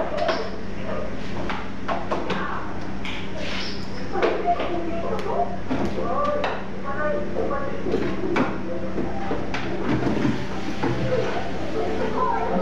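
Indistinct voices talking in the background, with scattered clicks and knocks from kitchen work and a steady low hum underneath.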